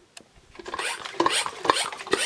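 Handling noise: short rubbing, rasping strokes, about two a second, starting about half a second in.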